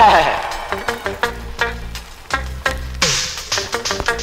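Reggae dub playing loud over a sound system: a steady drum beat over a deep bass line, with a falling sweep in pitch at the start and again about three seconds in, the second joined by a burst of hiss.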